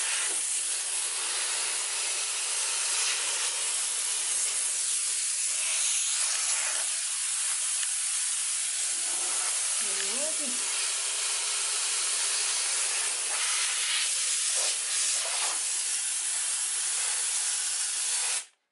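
Monster steam cleaner jetting steam in a steady, continuous hiss as it is worked over bathroom floor tile and a plastic dog potty tray.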